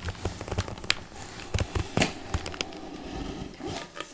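A cardboard box being handled and opened by hand: irregular scrapes, taps and crinkles.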